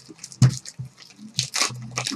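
Black plastic pack wrapper being handled by hand, crinkling and crackling, with a sharp crack about half a second in and a crinkly rustle around a second and a half in.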